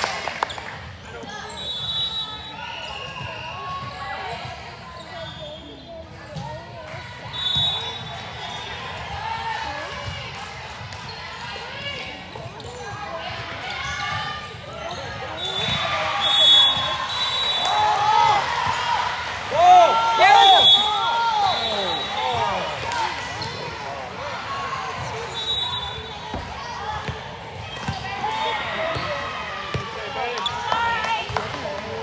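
Volleyball being played in a large, echoing gym: players' voices calling and shouting, loudest around the middle, over the thuds of the ball being hit and bounced. Short high squeaks come and go throughout.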